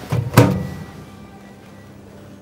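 A small countertop oven door shut, two knocks close together, the second much louder with a short ring, over soft background music.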